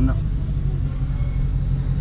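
Car engine and road noise, a low steady rumble heard from inside the cabin while driving.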